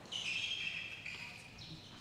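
A high chirping call, like a bird's, held for about a second and a half.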